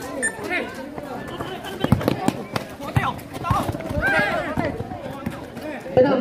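Voices and shouts of spectators and players, with several sharp thuds between about two and four seconds in from a basketball bouncing on the concrete court.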